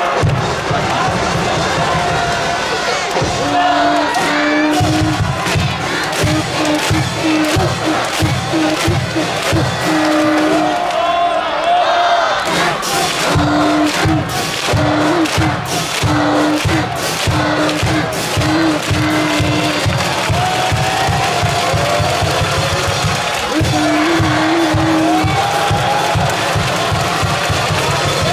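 University cheering section performing a Waseda cheer song: a brass band and a steady drum beat, with a crowd of fans singing and shouting along.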